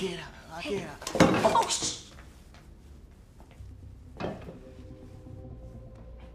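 Two people's wordless vocal sounds, gasps and exclamations, loudest in the first two seconds as they tussle. Then soft, sustained background music notes come in, with a light knock about four seconds in.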